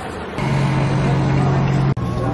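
An engine running steadily at one pitch starts about half a second in over outdoor background noise, then cuts off abruptly near the end.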